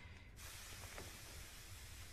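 Faint, steady hiss that starts abruptly about half a second in, over a low rumble.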